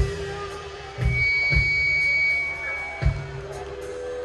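Live rock band playing a sparse passage: four separate bass-drum and cymbal hits over held electric guitar and bass notes, with a high sustained guitar tone through the middle.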